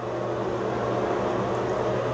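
A steady low mechanical hum with a faint even hiss, as from a running fan or motor in a small room.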